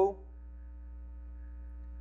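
Steady low electrical mains hum with faint steady higher tones above it, heard in a pause between spoken sentences. The last bit of a spoken word is heard right at the start.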